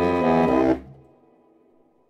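A jazz reed quartet of saxophones and bass clarinet plays a full chord over a deep bass line. The chord cuts off sharply under a second in, and the room's reverberation fades to near silence through a rest.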